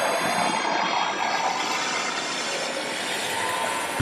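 A steady, noisy rushing sound effect with a high whine and its overtones sliding slowly down in pitch; it cuts off sharply at the end.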